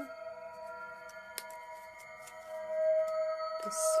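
Background music of long, steady held tones that swell a little near the end, with a few faint clicks and a short rustle from cardboard pieces being handled.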